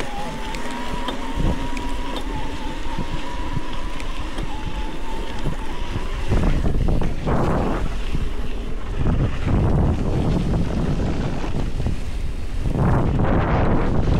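Wind buffeting the microphone and knobby tyres rolling over a dirt trail on a fast mountain-bike descent. A thin, steady whine runs through the first six seconds; after that the rumble turns louder and rougher, with gusty surges.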